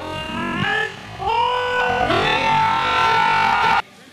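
Loud, held shouts from several voices, rising in pitch and then sustained, cheering a goal. They cut off abruptly just before the end.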